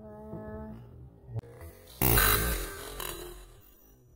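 Ramune marble-soda bottle being opened by pressing its plastic plunger: a sharp click about one and a half seconds in, then a sudden loud hiss of carbonation escaping as the marble seal is pushed down, fading over about a second and a half.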